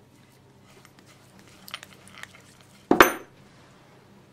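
Steel steering-box parts knocking together: a few faint light clicks, then one sharp metallic clank with a brief ringing about three seconds in.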